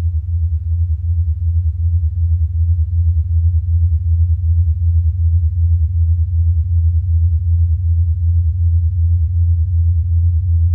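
Tape echo self-oscillating with its feedback turned up: a loud, low, steady drone that throbs rapidly and evenly as the repeats pile up.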